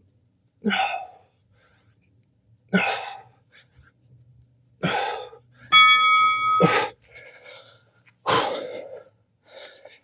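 Heavy, forceful exhales from a man doing push-ups, about one every two seconds. About six seconds in, an interval timer sounds a short electronic tone marking the end of the set.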